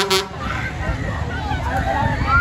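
A short, loud horn toot right at the start, then voices and shouts over the steady low rumble of a spinning fairground thrill ride.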